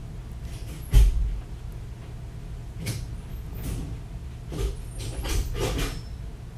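Handling noise of a patient being rolled from prone to supine onto a stretcher by a surgical team: a dull thump about a second in, then scattered soft knocks and rustling of sheets over a steady low room hum.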